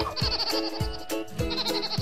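Children's cartoon background music with a steady, regular beat, with a high warbling sound effect laid over it twice.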